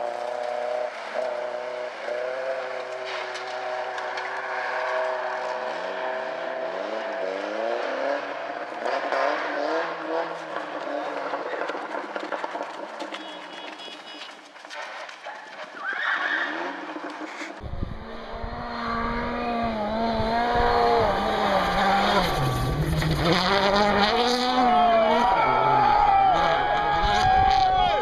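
Rally car engines revving, the pitch rising and falling again and again. After a sudden cut about two-thirds of the way in, another rally car engine revs over a low rumble, growing louder toward the end.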